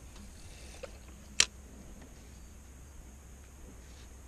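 A spinning reel's bail clicking shut once, about a second and a half in, after a cast, over a faint low hum.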